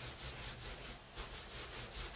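Hands rolling a soapy wet wool strand back and forth on a terry-cloth towel to wet-felt it into a cord: a soft, rhythmic rubbing swish, stroke after stroke.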